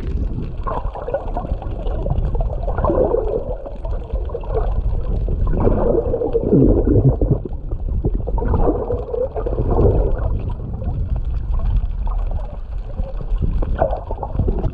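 Muffled underwater water noise from a camera held below the surface: a steady low rumble with whooshing swells that come and go every two to three seconds.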